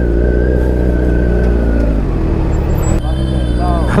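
Engines idling in a stopped traffic jam, a steady low rumble. About three seconds in, the rumble breaks up and a thin high tone comes in.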